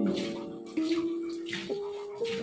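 Background music of held notes that change pitch about once a second, with faint water spray from a hand shower as a dog is bathed in a tub.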